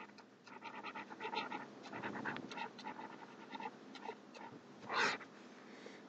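Stylus writing on a screen: a run of short scratching strokes and taps as words are handwritten, with one louder, longer stroke about five seconds in.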